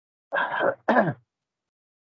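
A man clearing his throat: two short bursts about a second in, the second falling in pitch.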